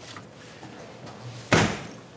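Door of a small steel keypad safe slammed shut: a single sharp bang about one and a half seconds in.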